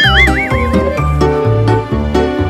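Comedy background music with a bouncy bass line, plus a high, warbling comic sound effect that wobbles up and down several times during the first second.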